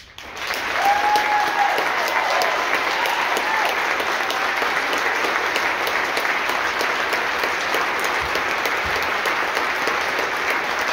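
Concert-hall audience applauding, bursting in suddenly out of silence at the close of a piece and then holding steady.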